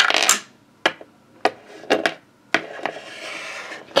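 Small plastic toy pieces being handled: a brief rustle, then four light clicks about half a second apart as a toy figure and plastic cookie accessories are knocked against a plastic shelf.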